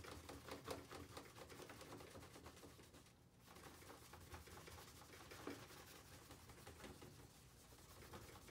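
Paintbrush scrubbing acrylic paint onto paper, a faint run of short scratchy strokes with a brief pause about three seconds in.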